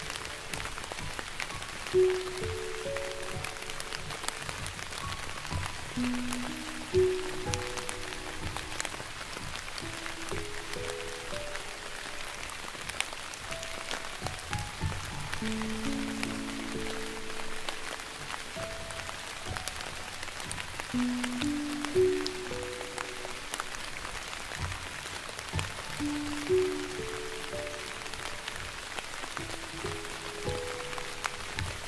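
Slow piano melody with soft rain behind it: a steady hiss flecked with small drop ticks.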